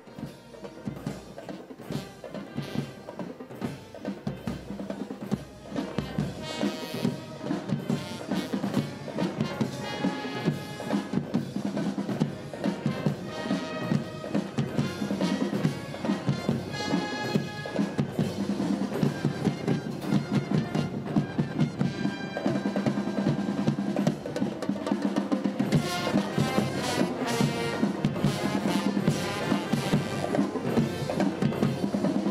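Massed military marching band playing on parade: bass and snare drums beat a steady march rhythm, with brass coming in about seven seconds in and swelling near the end.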